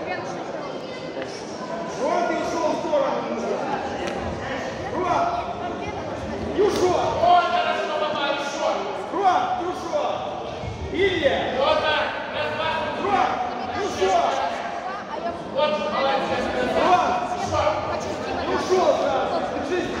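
Voices calling out in a large, echoing sports hall, with a few sharp thumps from blows or feet landing on the mat.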